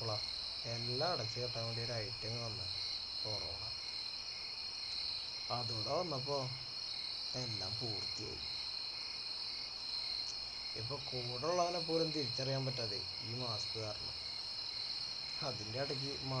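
A steady, unbroken high-pitched insect chorus, like crickets. Several times it is joined by people's voices talking in short stretches.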